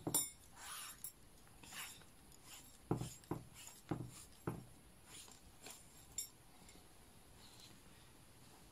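Short brass pipes clinking and tapping against each other as synthetic string is threaded and pulled through them: about ten light, irregular clinks, then quiet handling near the end.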